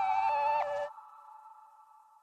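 Electronic music: several held synth notes that step between pitches, cutting off suddenly about a second in. One faint held tone is left, fading away.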